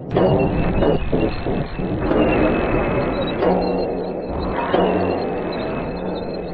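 Monster-movie soundtrack: a low, droning score mixed with dense, continuous sound effects, with no clear impacts.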